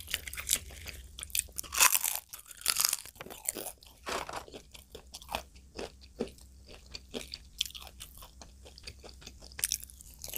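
Close-miked eating: chewing a mouthful of poori and curry, with crunchy bites and wet mouth sounds. The loudest bursts come about two and three seconds in, then quieter chewing clicks.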